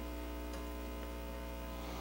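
Steady electrical mains hum with a stack of overtones, running evenly. No other sound stands out above it.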